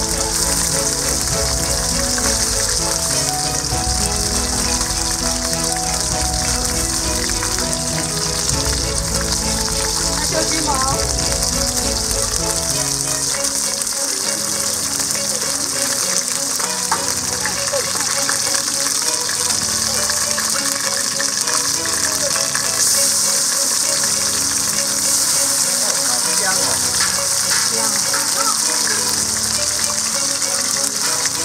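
Whole shrimp frying in hot oil in a wok, a steady sizzle.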